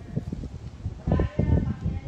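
Low, uneven rumbling noise throughout, with a faint wavering call about a second in.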